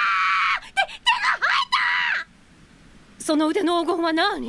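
Anime voice acting: a girl screams in one long high cry, then in several shorter shrieks. After a short lull, a lower, wavering yell begins near the end.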